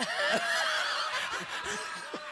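Several people laughing at once after a joke, a dense burst of overlapping laughter that slowly dies down.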